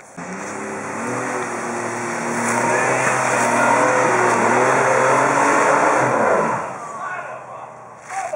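Nissan Xterra's engine revving under load as it climbs a steep dirt hill, building for a few seconds, holding high, then falling away about six and a half seconds in as the throttle comes off.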